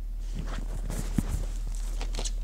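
Light knocks and rustles of handling, with one sharper knock a little after a second in, over a steady low hum.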